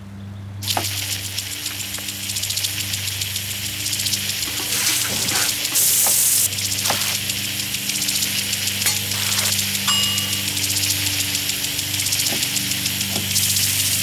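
Garden impact sprinkler spraying water indoors: a dense steady hiss that starts just under a second in. A few sharp knocks of a knife on a cutting board come through it, over a low steady hum.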